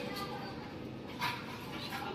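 A small dog on a leash gives a faint, brief whimper about a second in, over quiet room sound.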